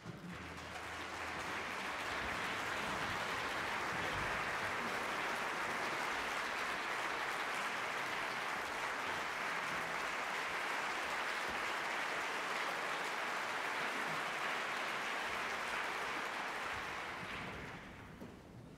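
Concert-hall audience applauding: the clapping swells over the first couple of seconds, holds steady, then dies away near the end.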